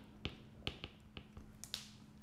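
Faint, sharp taps and clicks of a stylus on a tablet screen while a word is handwritten, about six light taps at uneven intervals.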